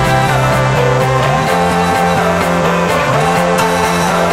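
Background electronic dance music: layered synth chords over a pulsing beat, with a bass tone that slides up in pitch twice.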